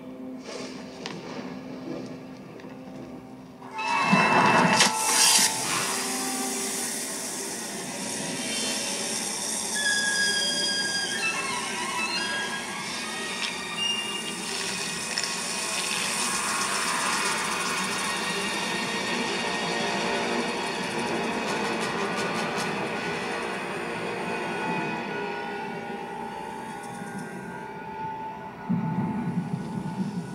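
Film soundtrack played back from a TV: tense orchestral score over a steady hiss of many snakes, with a sudden loud burst about four seconds in.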